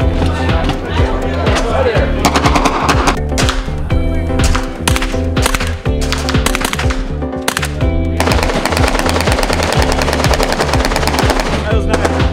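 Background music over gunfire from a suppressed AK-pattern rifle: scattered shots at first, then a fast continuous string of automatic fire from about eight seconds in until just before the end.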